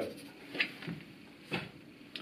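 A few short, quiet scratches of a marker pen drawing on a whiteboard, one about half a second in and a sharper one past a second and a half, in a small room.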